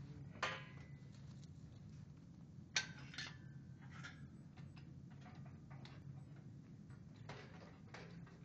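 Light metallic clinks and knocks from a steel-framed library book cart, a few scattered strokes with the sharpest about half a second in and just under three seconds in, over a steady low hum.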